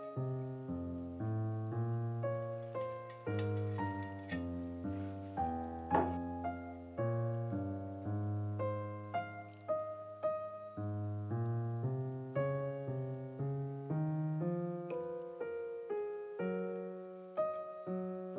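Background piano music: a slow tune of single notes over held low notes, played without a break.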